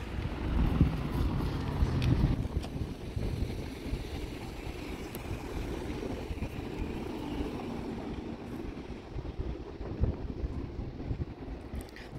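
Wind buffeting the phone's microphone: an uneven low rumble that swells in gusts, strongest in the first couple of seconds.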